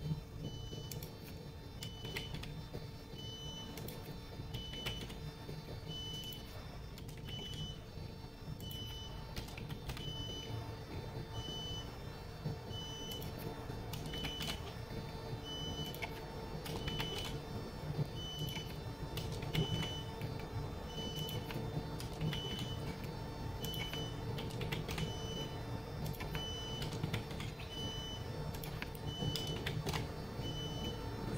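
Computer keyboard keys being typed in short irregular runs of clicks, entering values into a loading computer. Throughout, a short high beep repeats evenly about every second and a half over a steady low hum.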